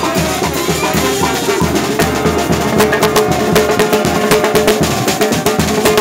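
Brass band music with drums and percussion, a held brass note and a quick run of sharp hits from about three seconds in.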